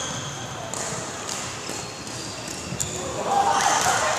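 Indoor badminton hall ambience: short high squeaks of court shoes on the floor and a few sharp knocks in a reverberant hall. Indistinct voices grow louder near the end.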